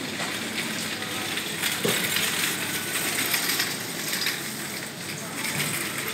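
Light metallic clinking and rattling over a steady hiss of supermarket background noise, busiest from about a second and a half in.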